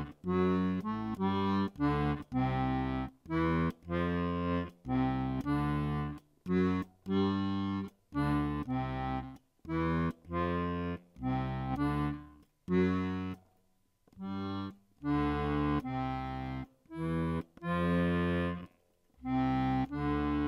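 Accordion playing a salsa groove on its left-hand bass and chord buttons: short, detached bass notes and chords in a steady syncopated rhythm, with a brief pause about two-thirds of the way through.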